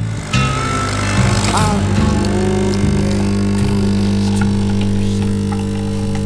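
Capsule coffee machine's pump buzzing steadily as it pours coffee into a mug.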